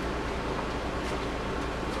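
Steady hiss with a low hum, with a few faint scrapes from a metal utensil stirring a gummy mixture in a plastic cup.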